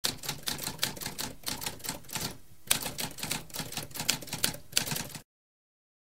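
Typewriter keys clacking in quick, uneven strokes, several a second, with a short pause a little over two seconds in. The typing stops abruptly about five seconds in.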